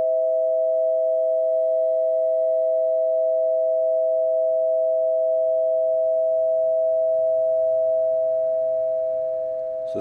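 Two metal tubes of a Pythagorean tone generator ringing together from a mallet strike: a steady two-note chord, easing off slightly near the end. It is the chord that lifts the preceding discord.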